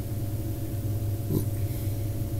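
Steady low electrical hum of room tone, with one brief faint sound a little past halfway.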